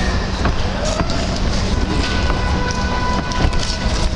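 Outdoor ball-game ambience: a constant low rumble with distant shouts from players and onlookers, and a steady held tone for about a second near the middle.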